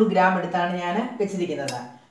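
A voice talking, with a spoon clinking against a bowl near the end.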